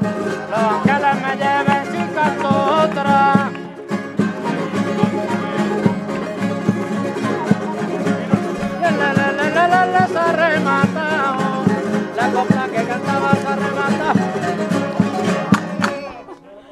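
Spanish folk string band playing a parranda in triple time: a violin carries the wavering melody over strummed guitars and a twelve-string Spanish lute. The music stops at the very end.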